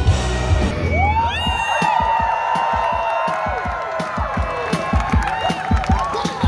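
A live rock band's song ends about a second in. A crowd then cheers and whoops, with many overlapping shouts and scattered low thumps.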